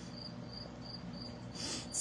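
A high-pitched insect-like chirp repeating evenly about three times a second, fading out shortly before the end. A brief soft rush of noise, like an indrawn breath, follows just before the end.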